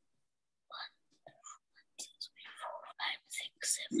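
Quiet, whispery speech: a few short, soft sounds at first, then talk running on from about halfway.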